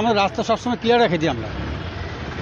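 A man speaking, with low street-traffic noise behind. His voice stops a little past halfway, leaving the traffic rumble.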